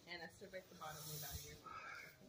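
Faint, distant voices talking, with a soft hiss about halfway through.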